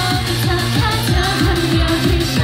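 Idol-pop song through stage PA speakers: female voices singing over a fast, steady kick-drum beat.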